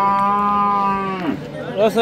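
One long moo from cattle, held steady and then dropping in pitch and stopping a little over a second in. A man's voice follows near the end.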